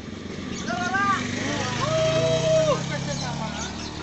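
A vehicle engine running nearby, loudest around the middle, under a few voices calling out, one drawn out for about a second.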